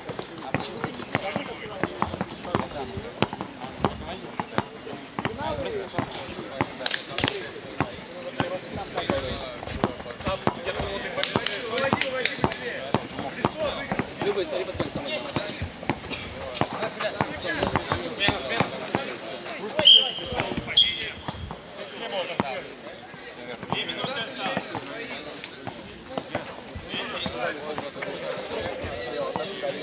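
A basketball bouncing and being dribbled during a streetball game, a run of short sharp impacts amid players' voices. Two brief high-pitched tones about two-thirds of the way in are the loudest sounds.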